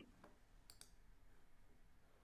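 Near silence: room tone with two faint, quick clicks close together a little under a second in.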